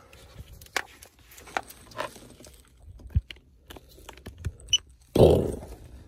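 Small clicks, knocks and rattles of a cable and connector being plugged into an OBD2 head-up display unit. Near the end comes a short high beep as the unit powers up, followed by a brief loud vocal sound.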